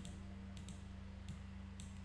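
Several faint computer mouse clicks, spaced irregularly, over a steady low electrical hum.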